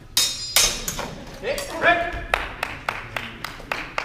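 Steel training swords clashing in a fencing exchange: two sharp metallic clashes near the start, the first with a high ringing, followed midway by a shout and then a quick run of sharp clicks and knocks, about six a second.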